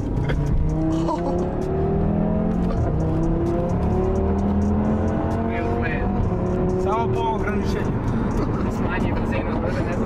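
Audi car engine accelerating hard from inside the cabin. Its pitch climbs steadily, drops back at each upshift and climbs again, as it pulls through the gears.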